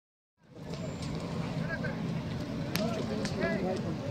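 A large building fire burning with a steady low rumble and sharp crackles and pops, one loud pop a little before three seconds in, starting about half a second in. Voices of people talking come through in the background.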